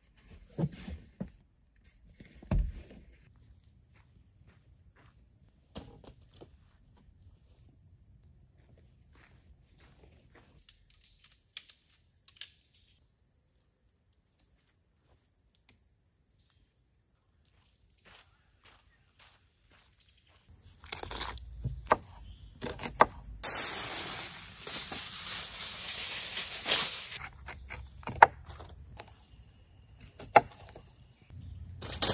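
Steady, high-pitched drone of insects in a forest, with scattered small clicks and knocks. About twenty seconds in, several seconds of louder rustling from something being handled.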